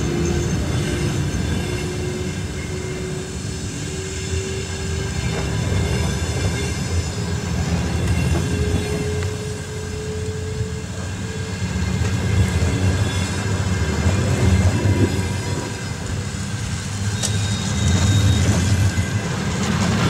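Passenger train coaches rolling past as the train pulls out, the wheels rumbling on the rails. A tone rises slowly in pitch through the first half.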